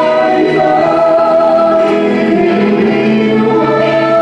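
Two vocalists, a woman and a man, singing a gospel-style worship song into microphones over amplified musical accompaniment, with long held notes.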